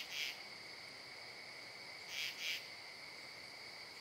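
Insects chirring: a faint, steady high-pitched drone, with two louder swells of buzzing, one right at the start and one about two seconds in.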